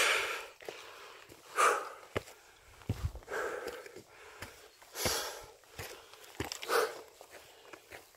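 A hiker breathing hard while walking, a loud breath about every second and a half to two seconds, with scattered footsteps on a dirt trail between them.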